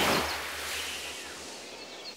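Scene-transition whoosh: a swell of hissing noise that fades away over two seconds, with the low note of a preceding music sting dying out underneath.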